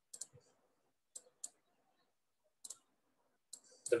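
Faint, short, sharp clicks, about eight of them at irregular intervals, from a pen on a digital drawing tablet as a number and a dot are written.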